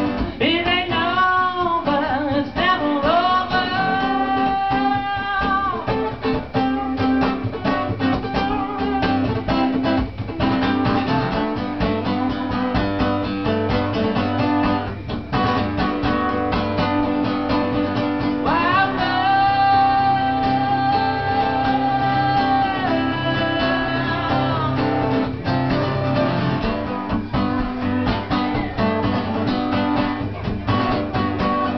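Live solo song: a steel-string acoustic guitar strummed steadily while a man sings. Twice his voice holds long notes, once from about a second in and again from about nineteen seconds in.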